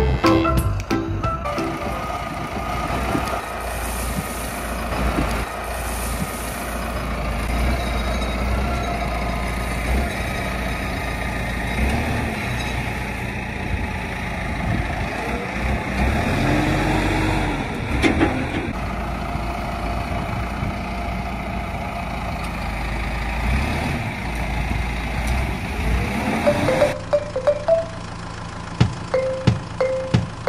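Farm tractor's engine running steadily as its front loader bucket is worked, with a rising and falling change in the engine note a little past the middle and a short clatter of gravel tipping out of the bucket. Background music plays briefly at the start and again near the end.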